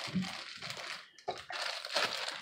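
Plastic bag of baby carrots crinkling softly as it is handled and folded up.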